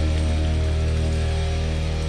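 Opening of a live hard-rock band recording: a loud, held low chord of distorted electric guitar and bass that rings steadily without a change of note.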